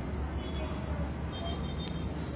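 Steady low background hum with a faint even noise, and a small click near the end.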